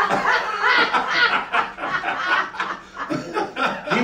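Laughter: a run of short, repeated chuckles in reply to a joke.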